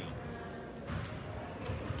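Background noise of a busy gym building: scattered low thumps with a couple of sharp clicks, under faint distant voices.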